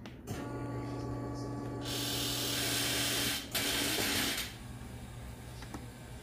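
Hill-Rom hospital bed's electric actuator motor running as the head section is raised: a steady hum that lasts about three seconds, with a hiss added over its last second and a half, then stops. A second, shorter hiss of about a second follows.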